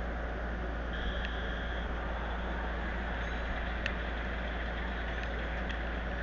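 Steady low electrical hum under a constant hiss, with a few faint clicks and a brief faint high tone about a second in.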